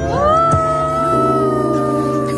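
A long wordless held vocal note that slides up at the start, then holds steady, over music with steady low notes.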